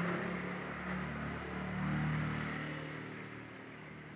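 A vehicle engine passing, its hum shifting slightly in pitch, growing louder to a peak about two seconds in and then fading away.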